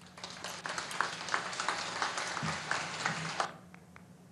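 Applause from a large seated audience of many people clapping. It starts almost at once and stops fairly abruptly about three and a half seconds in.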